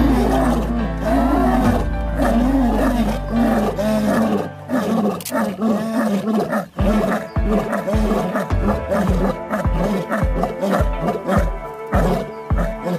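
Male lion roaring: a long run of repeated deep grunting calls, about two a second, with background music underneath.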